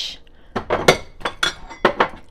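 Dishware clinking as a cup is handled: a run of sharp clinks and knocks starting about half a second in, the loudest near the middle and just before the end.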